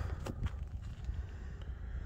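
Wind rumbling on the microphone, uneven and low, with a few soft knocks in the first half second.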